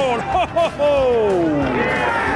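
Excited football commentator's voice calling a goal, ending in one long drawn-out call that falls in pitch.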